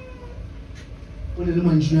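A man's voice amplified through a microphone. After about a second of quieter room sound, he begins one long, drawn-out syllable about a second and a half in, at a steady low pitch.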